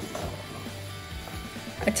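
Wooden spatula stirring and scraping grated courgette around a nonstick frying pan, a fairly even rattling scrape.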